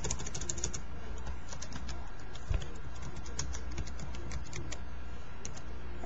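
Typing on a computer keyboard: a quick run of keystrokes at the start, then scattered key presses, over a steady low hum. There is a single soft thump about two and a half seconds in.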